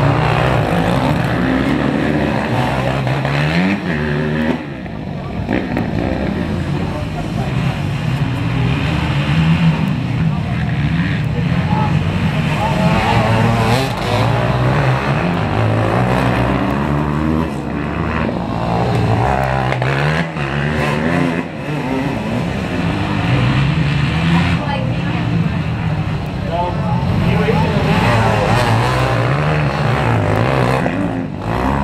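A pack of dirt bikes racing on a dirt track, their engines revving up and easing off again and again as riders go through the turns. The sound swells as bikes pass close by and sinks as they move away around the track.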